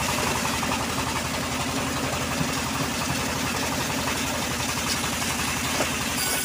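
Homemade band sawmill running steadily, its drive going with a fast, even low beat while the blade turns between cuts of teak.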